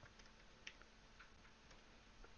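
Near silence broken by a handful of faint, irregular computer keyboard keystrokes as a short piece of code is typed.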